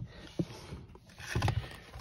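Handling noise inside a parked car's cabin with the engine off: soft rubbing as the phone is moved about, a faint click about half a second in, and a short low thump around a second and a half in.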